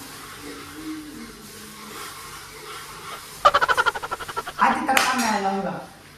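Pots and utensils clattering in a quick run of strokes for about a second, a little past the middle, followed by a short voice falling in pitch.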